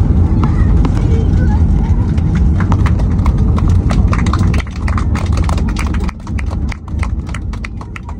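Inside the cabin of a Boeing 737 on its landing rollout: the heavy rumble of the engines and of the wheels on the runway, easing off in steps as the aircraft slows, with a quick run of clicks and rattles growing more frequent in the second half.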